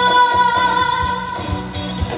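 A woman singing one long held high note over a band backing with a steady beat; the note wavers and fades out about a second and a half in.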